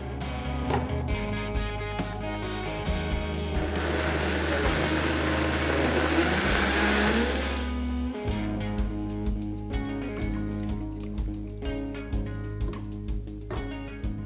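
Countertop blender running for about four seconds, puréeing charred tomatoes and chiles for a red salsa, then cutting off suddenly, over background music.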